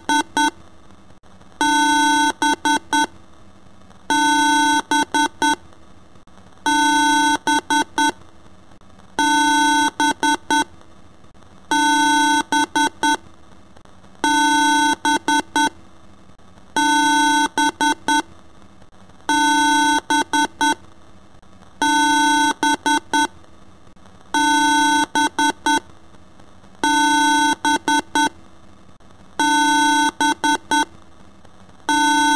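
Electronic beeping in a loop. Each round is a long, buzzy beep followed by three or four quick short beeps, and the pattern repeats about every two and a half seconds.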